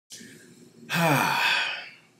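A man's faint intake of breath, then a long breathy sigh that falls in pitch, close to the microphone.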